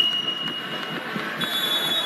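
Steady indoor arena crowd noise with a single high-pitched electronic tone that fades out about a second in. A second, higher buzzer-like tone comes in near the end.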